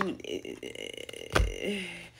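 A woman's voice trails off into a low, rough, wordless vocal sound, like a held "mmm" or a stifled burp. A sharp thump comes about a second and a half in, then a short wordless "uh" near the end.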